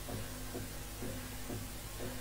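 Kachin drum-dance music: hand-beaten drums keep a steady beat about twice a second, over a held low tone.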